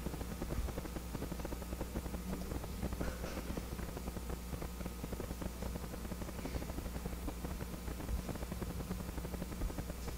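Steady low hum and faint hiss of room tone picked up by an open lecture microphone, with two faint brief noises about three and six and a half seconds in.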